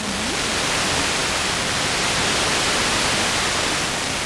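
Steady loud hiss of static from an analogue TV receiver's sound channel with no usable signal. It is the sign of the distant sporadic-E signal having faded into the noise.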